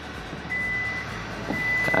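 Kia Sorento power tailgate's warning chime sounding two steady high beeps about a second apart as the tailgate starts to close after its close button is pressed.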